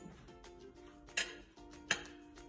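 Background music, with two sharp clinks of a metal serving spoon against a plate, about a second in and again near the end.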